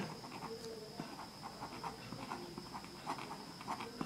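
Pen writing on paper: a series of short, faint scratching strokes as words are written out, over a faint steady high whine.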